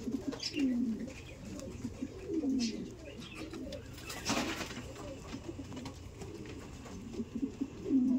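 Domestic pigeons cooing in a cage: a string of low, falling coos repeated every second or two. A short burst of noise about four seconds in.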